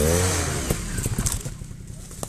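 Trials motorcycle engine revving up and falling back once as the bike works up a rocky step, with a few sharp knocks, then dropping to a lower, quieter running.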